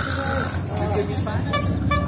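Mixed outdoor sound of voices and music, with a steady low hum underneath and a couple of short held tones.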